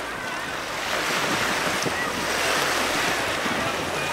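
Strong wind rushing over the microphone with a low rumble, mixed with the wash of small waves on the shore, a steady noise that swells slightly about a second in.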